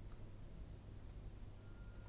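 A few faint computer mouse clicks, one near the start and two close together about a second in, over a low steady hum.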